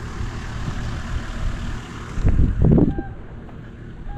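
Off-road 4x4's engine running at low speed, a steady low rumble with the noise of tyres on a dirt track. A short louder burst cuts in about two seconds in.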